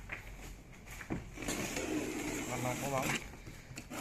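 Utility knife slitting the packing tape on a cardboard bicycle box: a couple of light knocks, then a rasp lasting about a second and a half from around the middle.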